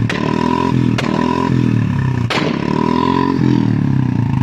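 Royal Enfield Bullet single-cylinder engine held at high revs while the kill switch is flicked off and on, firing three loud exhaust backfire bangs, the last the loudest. The revs sag and pick up between the bangs as the ignition is cut and restored, and unburnt fuel ignites in the exhaust.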